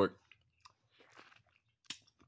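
A man's voice breaks off at the start, then a quiet pause holding only a few faint small clicks and one sharper click just before the end.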